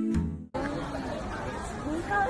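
Acoustic guitar music cuts off abruptly about a quarter of the way in. Faint background chatter of voices over street noise follows.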